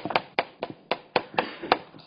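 Chalk striking a chalkboard while writing: a quick run of sharp taps, about four a second.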